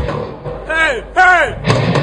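A live death metal band's music cuts off, and two loud shouted yells follow about a second in, each rising then falling in pitch. A sharp drum hit lands near the end.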